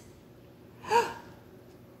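A woman's single short excited gasp about a second in, with a quick rise and fall in pitch.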